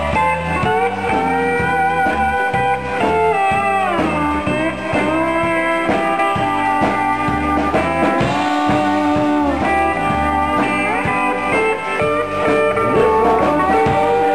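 Live honky-tonk country band playing an instrumental intro: pedal steel guitar with sliding, bending notes over a steady bass and drum beat and guitar.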